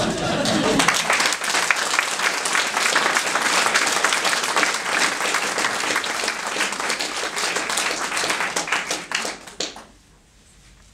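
Audience applauding in a room, the clapping thinning out and dying away in the last second.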